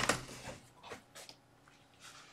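Music cuts off abruptly at the start, leaving a quiet room with a few faint short sounds of a person moving about.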